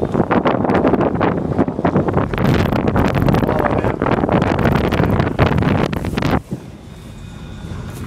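Car drifting on a snow-covered frozen lake: the engine is worked hard under a loud, rough rush of wind and snow noise. It drops away suddenly about six and a half seconds in to a quieter steady hum.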